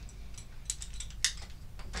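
A few light, sharp clicks of metal climbing gear with quiet rope handling as a climbing rope is loaded into an ATC Guide belay plate hanging on carabiners.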